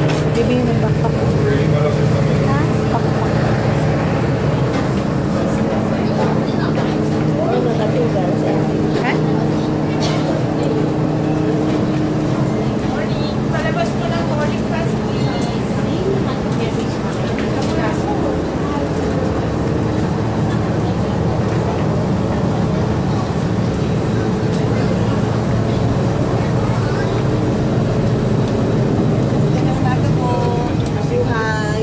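Steady droning hum of an airliner cabin during boarding, with passengers talking indistinctly in the aisle. One higher tone in the hum drops out about twelve seconds in.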